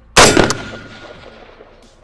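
A single shot from a Daewoo K1 5.56 mm rifle: one sharp, loud report followed by an echo that fades away over about a second.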